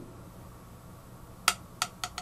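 Glass hydrometer released into a test jar of isopropyl alcohol, sinking and striking the bottom of the jar with two sharp, briefly ringing glass clinks about one and a half seconds in. It sinks right to the bottom because pure alcohol is far lighter than water, below the hydrometer's scale.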